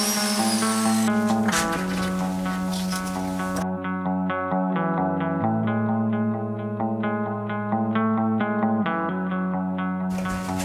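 Background music with plucked guitar and bass. For the first three and a half seconds a plate joiner cutting biscuit slots in wood sounds under it, then stops abruptly.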